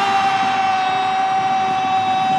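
A football commentator's long, held goal cry, sustained on one steady high pitch.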